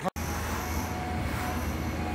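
Steady low mechanical rumble with a faint thin hum above it, heard in a concrete underground passage. It starts and stops abruptly at cuts in the recording.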